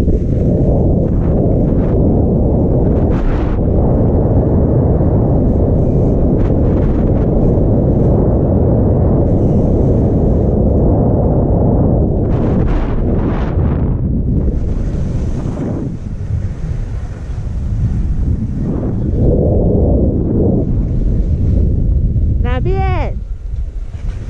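Wind buffeting an action camera's microphone during a downhill ski run, with skis hissing and scraping over the snow. The rush drops as the skier slows near the end, and a brief pitched, bending sound comes just before it eases off.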